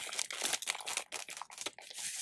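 Clear plastic wrapping on a pack of plastic planner envelopes crinkling irregularly as it is handled.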